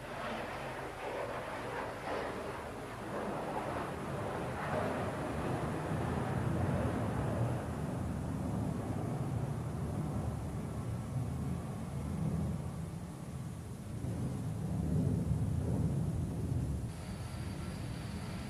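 Low, uneven outdoor rumble with a steady hiss above it, on an old film soundtrack. About a second before the end the sound changes: the rumble drops back and two faint steady high tones come in.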